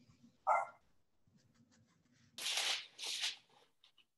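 A canvas board being slid and handled on a paper-covered table: two scraping rustles, each about half a second long, in the second half. About half a second in there is a brief sharp sound, about as loud as the rustles.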